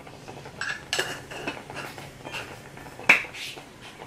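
A small spice jar being handled over a cooking pot: a few light clicks and knocks, the sharpest just after three seconds in.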